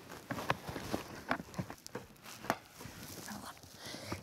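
Irregular light clicks and knocks of a car seat's LATCH lower-anchor connector and strap being handled and clipped onto the car's anchor bar, the sharpest about half a second and two and a half seconds in.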